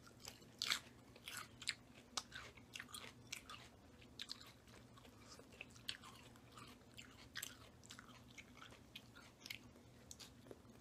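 Two people chewing mouthfuls of Caesar salad, romaine lettuce and croutons: quiet, irregular crisp crunches, with a faint steady low hum underneath.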